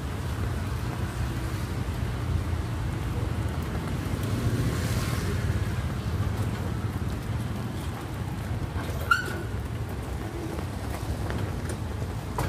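Steady low rumble of city street traffic, the hum of motorbikes and cars. About nine seconds in there is a brief sharp ringing clink.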